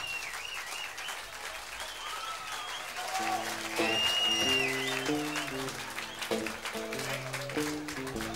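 Audience applause at a live blues show. About three seconds in, the band starts the next song with guitar and bass notes, one high note held for about a second.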